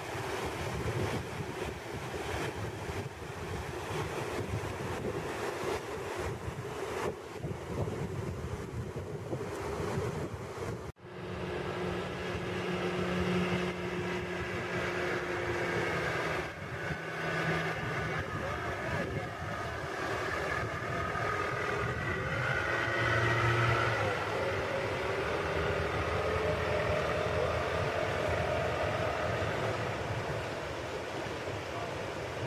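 Waterfall water rushing steadily. After a sudden cut about eleven seconds in, an outboard motor on a small inflatable boat runs across the water, its pitch shifting, over the rush of nearby rapids.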